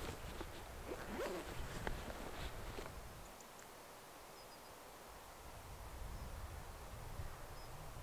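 Faint handling of a backpack, with rustling, a zip and small clicks, during the first three seconds. Then quiet outdoor air with a faint low rumble near the end.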